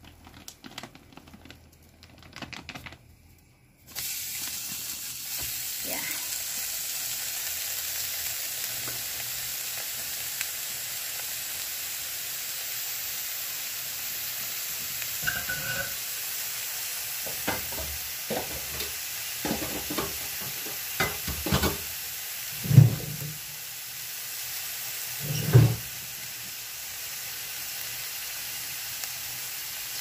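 Bacon frying in a hot ridged grill pan: a steady sizzle that starts suddenly about four seconds in. In the second half there are a few knocks and two louder thumps.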